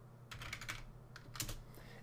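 Computer keyboard being typed on: a short run of faint, quick key clicks as a word is entered.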